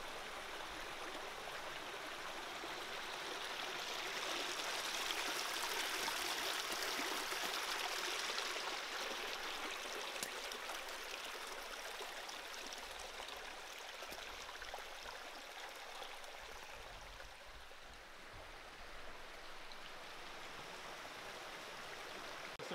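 A small forest creek running steadily, swelling a little a few seconds in and then easing back.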